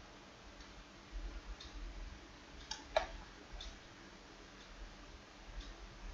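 Faint, scattered clicks of a computer mouse being operated, about half a dozen, the sharpest about three seconds in, over a faint low background rumble.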